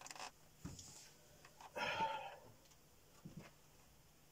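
A short, breathy vocal sound about two seconds in, over quiet room tone, with a few faint clicks.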